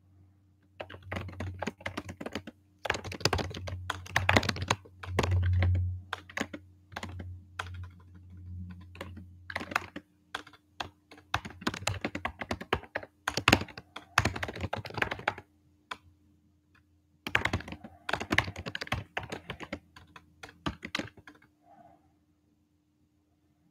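Typing on a computer keyboard: quick runs of key clicks in bursts, with short breaks about ten seconds in and again around sixteen seconds in.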